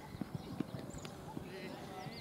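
A few dull, irregular knocks and footfalls on a cricket field as the ball is bowled and played, with faint birdsong chirping.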